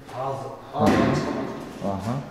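A man's voice speaking in short phrases, with a sudden knock or thud about a second in.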